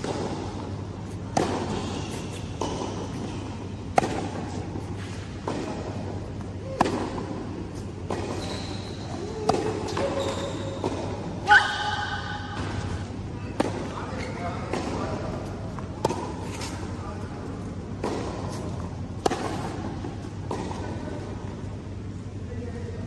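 A tennis rally on a hard indoor court: sharp racket-on-ball hits and ball bounces about every second and a half, echoing in a large hall, over a steady low hum.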